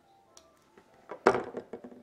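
A sharp click of a folding knife's blade snapping shut, then about a second later a louder knock as the closed knife is set down on the table, followed by a few smaller handling knocks.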